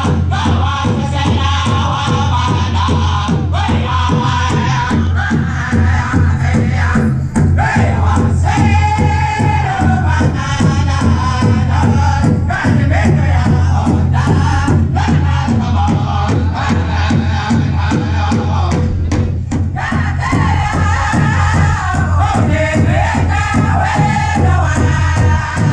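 Powwow drum group singing a grand entry song: several men's voices in high, pulsing chant over a large shared drum struck on a steady beat.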